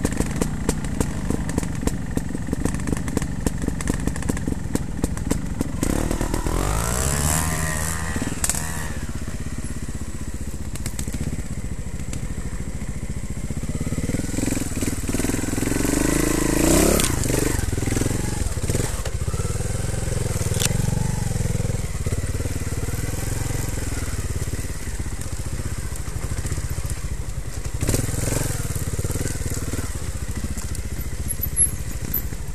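Trials motorcycle engine running at low revs with a fast, even firing pulse, then blipped and pulled up through the revs several times as the bike climbs a rough trail, with a few sharp knocks from the bike over the ground.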